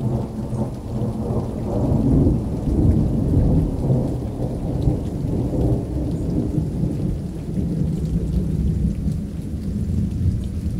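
A low, rolling rumble like thunder, starting abruptly out of silence, with a faint hiss above it.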